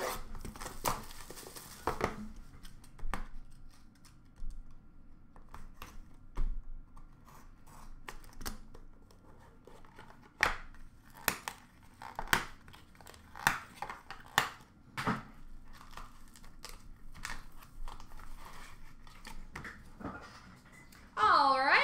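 Plastic wrap being torn and crinkled off a sealed hockey card box, followed by scattered sharp clicks and taps as the cardboard boxes are handled and set down.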